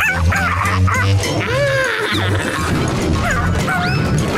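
Spot, a cartoon pet amoeba that acts like a dog, giving a series of short, dog-like yips and barks that rise and fall in pitch, over background music with a steady bass line.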